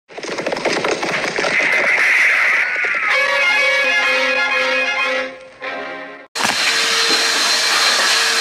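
A short music intro that fades out, then, about six seconds in, a cut to a shop vacuum switched on and running steadily with a whine, cleaning out a car interior.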